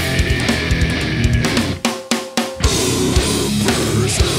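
Heavy metal band playing live: electric guitars, bass and a drum kit. About a second and a half in, the band stops short, leaving a few sharp hits, then comes back in full a little after two and a half seconds.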